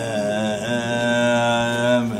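Male voice chanting a Tibetan Buddhist mantra in a long, held note that wavers slightly at its start, then stays steady and breaks off near the end.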